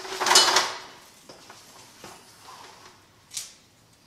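Steel tape measure's blade sliding, a short rattling slide within the first second, followed by faint handling noises and a brief hiss-like scrape near the end.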